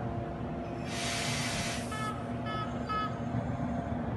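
Railcar engine idling steadily. About a second in comes a sharp hiss of released air, then three short high beeps half a second apart.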